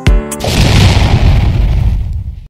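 Logo-sting intro music: a pitched drum-machine hit at the start, then about half a second in a loud, deep boom with a hissing swell that slowly fades.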